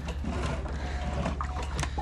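A steady low hum under scattered short clicks and rustles, the sound of the camera being handled and moved around.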